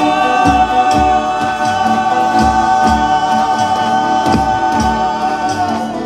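Folia de Reis company singing in several voices, holding one long, slightly wavering chord that breaks off near the end, over strummed violas and guitars and a drum beating steadily.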